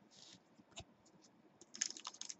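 Trading cards being handled by hand: a few faint clicks and a soft scrape. Near the end comes a quicker run of sharp clicks and crinkles as a card pack is worked open.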